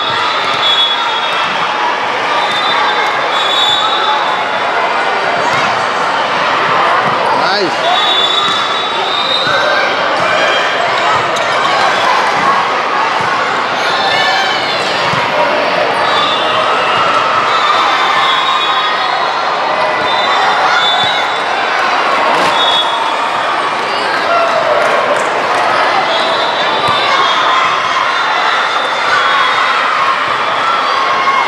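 Busy, echoing volleyball gym: many voices chattering and calling over each other, with volleyballs being hit and bouncing on the hardwood floor and short high-pitched squeals coming again and again.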